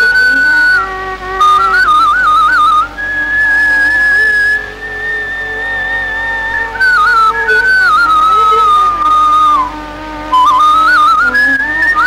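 Bamboo flute playing an ornamented melody, sliding and turning around its notes, with one long held high note from about three to seven seconds in. A quieter, lower accompanying line runs beneath it.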